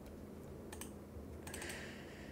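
A few faint, separate clicks of computer keys.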